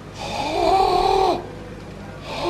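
A man's drawn-out vocal cry, starting a moment in, rising briefly and then held on one pitch for about a second before trailing off.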